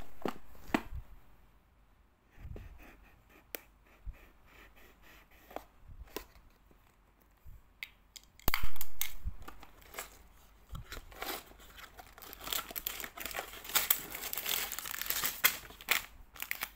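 A cardboard LEGO set box being opened: scattered clicks and scrapes as a knife cuts the tape seals, then a loud rip about eight and a half seconds in as the box comes open. Near the end, plastic parts bags crinkle and rustle as they are tipped out.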